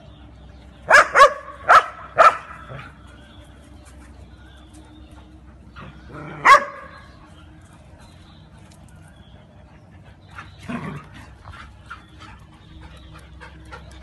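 Dog barking: four sharp barks in quick succession about a second in, then one more loud bark a few seconds later, followed by a fainter, softer sound near the end.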